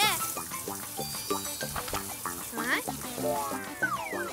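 Garden hose spraying a hard jet of water, a steady hiss, over light background music with short repeated notes.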